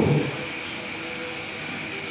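Steady background noise during a pause in a man's speech, with the end of his voice in the first moment.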